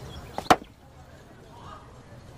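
A single sharp knock about half a second in, with a lighter tap just before it: an object set down hard on a wooden table.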